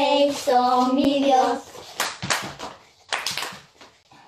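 A woman and children singing a Spanish children's action song, breaking off after about a second and a half into a run of sharp hand claps.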